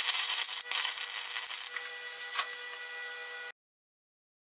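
MIG welding arc crackling steadily on a steel square-tube joint, over a faint steady hum, then cutting off abruptly near the end.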